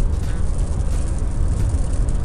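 Steady rumble of a moving car heard from inside the cabin, with an even hiss of tyres on a rain-wet road.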